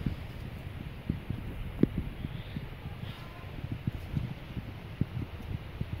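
Wind rumbling on the microphone, with scattered soft thumps and rustles as a handheld camera is carried through leafy woodland undergrowth.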